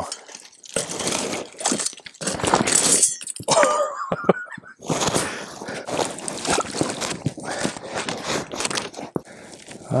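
Thin ice and sticks crunching and cracking in irregular bursts as a trapper in waders steps and works in a broken hole in the ice.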